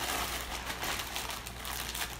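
Steady soft crackling and crinkling from the open slow cooker as thawed chopped spinach is put into the pot of vegetables.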